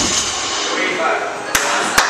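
Two sharp knocks about half a second apart near the end, in a gym just after a loaded barbell with bumper plates has been dropped on the platform.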